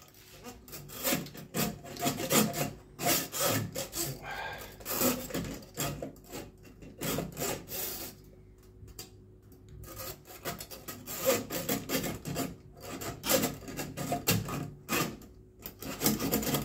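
Flexible coiled-metal drain snake being worked down a sink plughole, its cable rasping and scraping in the drain in a run of irregular strokes, with a lull about eight seconds in.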